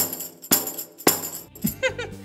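A hand tambourine struck on its skin head with the flat of the hand three times, about half a second apart. Each hit is a slap with a ringing shimmer from the small metal jingles (zills) around its frame.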